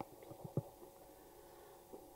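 A pause in speech: faint room tone through the microphone, with a few soft low taps in the first half second.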